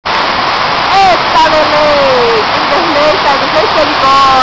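Waterfall water pouring down right onto the microphone in a loud, steady rush, with a person's voice calling out over it a few times.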